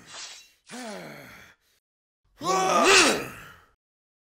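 A man's voice in a fight: a sharp breath at the start, a short falling groan about a second in, then a loud rising-and-falling yell around three seconds in.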